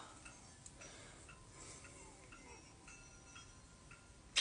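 Near silence: quiet room tone with a few faint, irregular small ticks.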